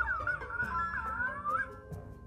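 Magic Mixie interactive plush toy giving an electronic warbling, chirping voice response to its wand. The voice starts suddenly and slides up and down in pitch for nearly two seconds.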